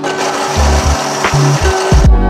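An electric burr coffee grinder running, a steady grinding hiss, over background music with a bass line.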